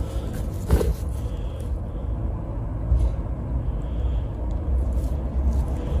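A steady low rumble throughout, with a few faint clicks from small wires and side cutters being handled close by.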